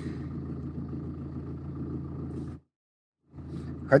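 Steady low rumble of a small waterfall, broken by a moment of dead silence about two and a half seconds in.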